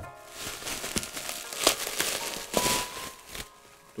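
Plastic bubble wrap crinkling and rustling as it is handled and unwrapped, with a few sharper crackles.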